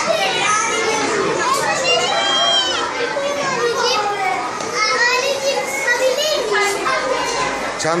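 A room full of young schoolchildren talking and calling out over one another, a continuous din of high overlapping voices.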